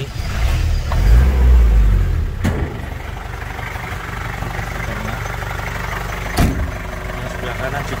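Daihatsu Taft GT F70's diesel engine running: a loud low surge in the first two seconds or so, then settling into a steady idle. Two sharp knocks, one about two and a half seconds in and one near the end.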